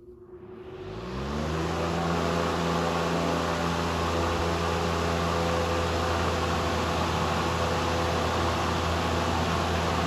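An 18-inch chrome high-velocity circulator fan switched on: its motor hum rises in pitch for about a second as it spins up, then it runs at a steady speed with a loud rush of air.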